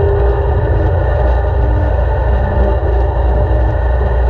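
Zero-turn riding mower's engine running steadily under load as it cuts through tall, weedy grass, a deep even drone.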